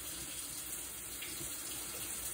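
A steady, even hiss of noise with no distinct events.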